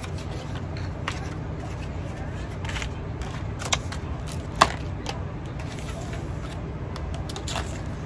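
Small packaged lip oils being handled and sorted on a table: a few light clicks and taps, the sharpest about four and a half seconds in, over a steady low hum.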